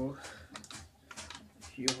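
Light irregular clicks and taps, several a second, from wire ends and fingers working at a small brass terminal fitting while the wires are pushed into it.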